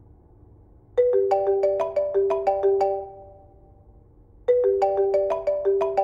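A mobile phone's melodic ringtone playing: a quick run of notes starts about a second in and repeats about three and a half seconds later.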